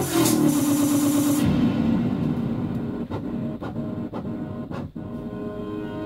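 A DJ mix transition: the electronic dance track's beat drops out and about a second and a half in its highs are filtered away, leaving a low, muffled wash with a few faint clicks. A soft melodic track begins near the end.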